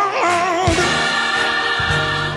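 Traditional black gospel choir singing with band accompaniment: a wavering vocal line, a drum stroke, then a long held chord through the second half.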